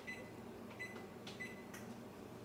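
Electronic oven control on a gas range beeping as its keypad is pressed to set the oven temperature to 450 degrees: short high beeps, about four, at uneven spacing.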